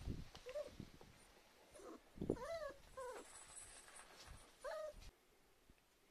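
Cats meowing: about four short meows, two of them close together in the middle. The sound cuts off suddenly about five seconds in.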